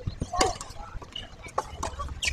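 Tennis ball knocking on a hard court, a few irregular knocks, as between-point bouncing and play carry over the court.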